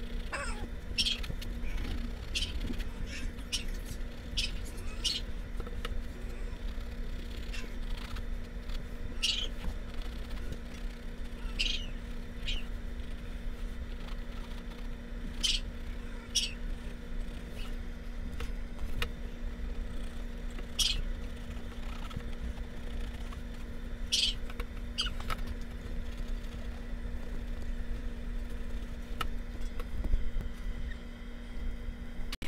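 Watercolor pencil drawing on a stretched canvas: short, scratchy strokes come at irregular intervals over a steady low hum.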